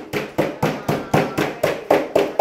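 A steady percussive beat of sharp claps or clicks, about four a second, evenly spaced.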